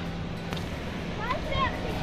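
Steady outdoor noise of wind and sea surf washing on shore rocks, with a brief faint voice about one and a half seconds in.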